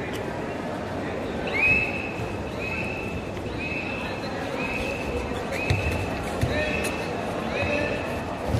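A kabaddi raider's high-pitched 'kabaddi' chant, repeated about once a second while he holds his breath on the raid. Each call rises quickly to a held note. A few dull thuds of bodies and feet on the mat come in the second half.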